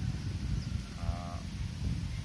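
Low, steady rumbling background noise during a pause in speech, with one short, flat hum-like tone about a second in.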